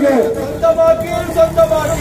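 A man's voice, amplified by a handheld microphone and loudspeaker, chanting slogans with each syllable drawn out on a long held note.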